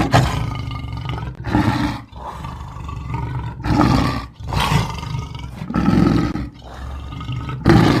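A big cat roaring and growling in a series of loud bursts with short breaks between them.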